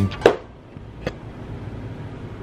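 A strummed guitar music bed ends on a last note that dies away in the first moment, followed by quiet room tone with a single sharp click about a second in, from the camera being handled.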